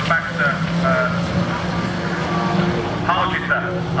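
Engines of small junior saloon race cars running steadily as they lap a dirt autograss track, a continuous low drone under the race commentary.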